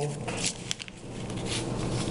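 A few soft clicks and rustles of handling at a claw machine's control panel, then a steady low hum.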